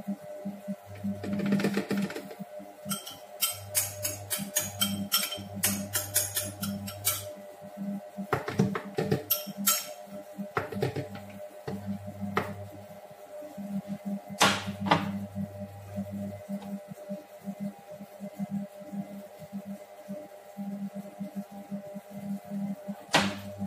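Background music under a run of sharp clinks and taps from a metal spoon scraping and knocking against a glass bowl as yogurt is spooned out, thick in the first half and more scattered later.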